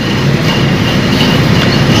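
Loud, steady rumbling background noise picked up by the microphone, with no clear speech in it.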